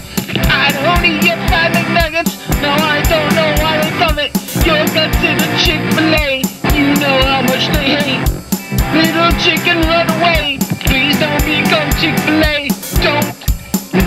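Hard rock music: a drum kit keeps a steady beat under guitars, with a wavering, bending lead melody on top.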